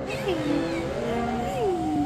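A cat meowing in drawn-out cries that bend up and down in pitch, over music with a wavering held tone.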